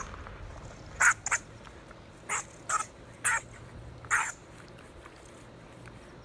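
Honey badgers snorting as they fight: about six short, harsh snorts in quick succession between about one and four and a half seconds in.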